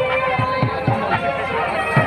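Procession music over crowd noise: low, heavy drum beats, several in the first second, under a wavering pitched melody and the voices of a crowd.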